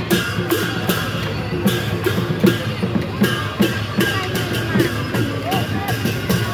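Newar dhime drums, large double-headed barrel drums, beaten in a steady driving rhythm, with sharp cymbal clashes cutting through about two or three times a second.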